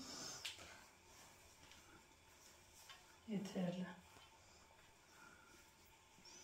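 Quiet room with faint soft clicks and rustles of hands spreading crushed walnut filling over baklava pastry in a tray, and a short murmur from a woman's voice a little over three seconds in.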